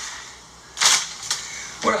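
A single sharp snap a little under a second in, followed by a fainter click, then a man starts to speak near the end.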